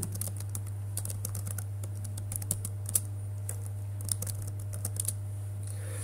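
Computer keyboard being typed on in irregular runs of keystrokes as a terminal command and a password are entered, over a steady low hum.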